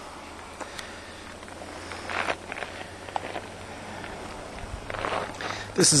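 A few faint, short scuffs over a steady low hum, with a voice starting right at the end.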